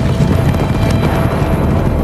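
Orchestral film score playing over the thudding of horses galloping.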